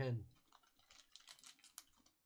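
A run of faint, quick, irregular clicks, starting about half a second in, after a spoken word.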